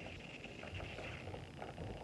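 Faint handling noise of a baby swing's plastic seat being fitted onto its metal frame: soft rustling with a few light clicks.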